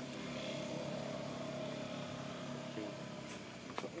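A steady engine hum that swells and then eases off, like a motor vehicle passing, with a single sharp click near the end.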